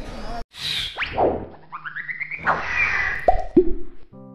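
Cartoon sound effects of an animated logo sting. After a brief cut to silence, a whoosh comes first, then quick sliding whistles, a short run of rising notes and a hissy sweep. Two short falling pops follow near the end.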